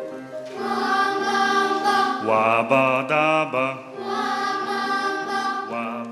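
A boys' choir sings wordless syllables over piano accompaniment. About two seconds in, the voices slide upward together.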